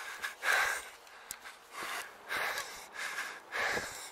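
A man breathing hard, with heavy breaths about once a second, out of breath from climbing steps uphill.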